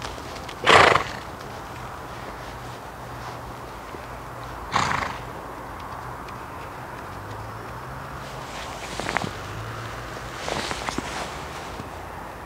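A horse in work snorts, a short loud blast of breath about a second in and another near five seconds, with a few softer ones near the end. Soft hoofbeats on the arena's dirt footing run under them.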